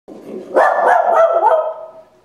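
A husky-type dog barking in a quick run of pitched barks, about three a second. A quieter start gives way to the loud run about half a second in, which trails off near the end.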